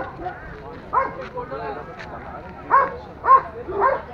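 A dog barking several short barks at irregular intervals, the loudest near the end, over a background of people's chatter.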